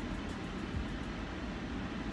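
Steady low hum and hiss inside the cabin of a car standing still, from its engine or ventilation running.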